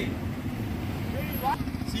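Steady low rumble of road traffic, a motor vehicle running close by. A short rising vocal sound cuts in about one and a half seconds in.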